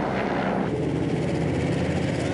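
Military helicopter flying over, then, about two-thirds of a second in, a wheeled armoured personnel carrier driving close past, its engine running loud and steady.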